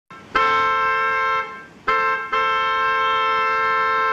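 Boat horn blasting with several steady tones sounding together: one blast of about a second, then a short toot that runs straight into a long blast.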